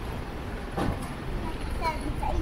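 Street ambience at a city intersection: a steady traffic hum with passers-by talking, and a young child's high voice starting near the end.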